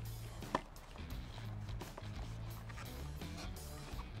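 Soft background music with a low, stepping bass line, and one faint click about half a second in.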